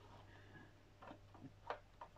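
Near silence with a few faint small clicks of plastic model parts being handled and fitted together, the clearest about three-quarters of the way through.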